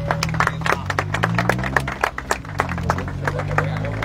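A small group of people applauding by hand, the clapping thickest in the first couple of seconds and thinning out toward the end. A low droning hum runs underneath.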